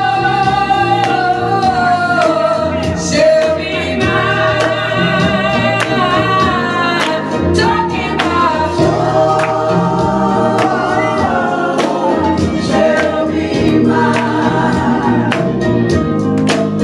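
A group of voices singing a gospel song with steady instrumental backing in the low notes, and sharp percussive hits through it.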